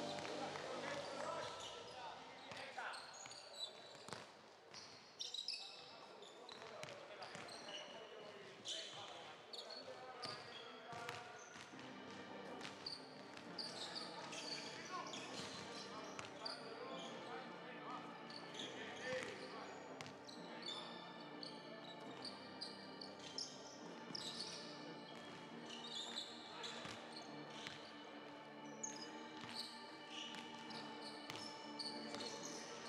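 Faint sports-hall ambience: basketballs bouncing on the court at irregular moments amid distant voices, with scattered short high squeaks.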